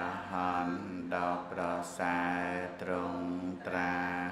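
A Buddhist monk's solo male voice chanting in a steady, melodic recitation, in held phrases of about a second each with short breaks for breath between.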